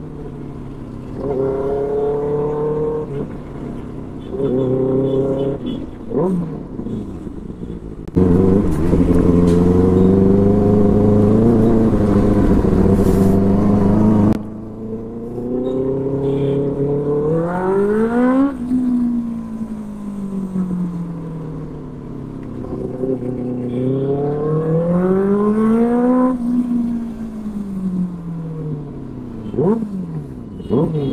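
Benelli 600i's inline-four engine revving through a loud exhaust while riding, the revs climbing and dropping again and again. It is loudest when held high for about six seconds in the middle.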